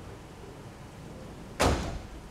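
Quiet room tone, then about one and a half seconds in a single sudden loud thump that dies away quickly.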